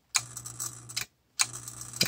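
VXT-120 boiler water feeder's solenoid valve energised twice by the feed button: each time it clicks open, runs about a second with a low steady hum and a light rush, and clicks shut. The valve is nice and quiet here, without its annoying buzz.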